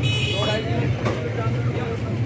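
Busy market ambience: the tail of a rooster's crow ends about half a second in, over a steady low hum and people talking nearby.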